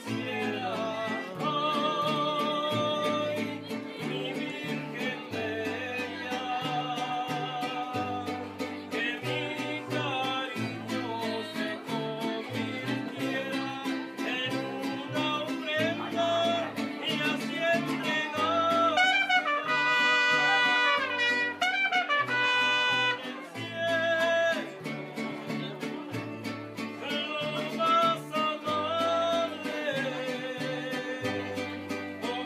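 A mariachi band playing live: a guitarrón plucking a walking bass line under strummed guitar, violin and trumpet, with a singing voice. The trumpet stands out loudest in a passage about two-thirds of the way through.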